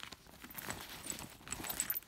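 Hands rummaging through the contents of a handbag: rustling and small scattered clicks and knocks as items are shifted about, busier in the second half.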